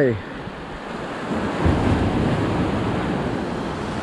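Small waves breaking and washing up the sand at the water's edge, the wash swelling about one and a half seconds in and then running on steadily.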